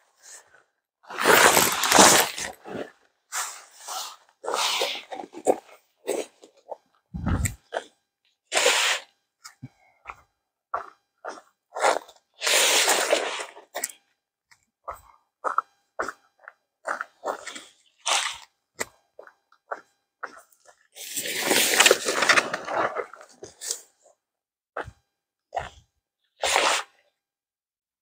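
Polyester tent groundsheet rustling and flapping in bursts as it is shaken out and spread flat, with short crunching footsteps on gravel between.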